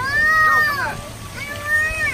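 Two high-pitched, drawn-out vocal calls from a person's voice, each arching up and then falling; the first is about a second long and the louder, the second starts about a second and a half in.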